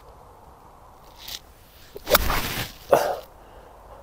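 An 8-iron shot played from the rough: the club swishes down through the grass and strikes the ball, a sudden noisy sound about two seconds in, with a second sharp sound just under a second later.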